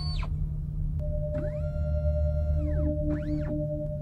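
Synthesized sci-fi scanner sound effects for a medical test: electronic tones sweep up and back down over a low steady hum. A steady beep-like tone comes in about a second in, and a few short pulsed tones sound near the end.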